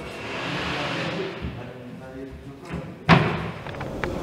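Work sounds on an exhibition construction site in a large hall. There is a hiss for the first second and a half, then faint voices, then a single loud thump on a wooden panel about three seconds in.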